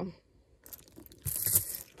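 A short rustle of fabric and handling a little past halfway, as a handbag on a chunky metal chain strap is swung up onto the shoulder.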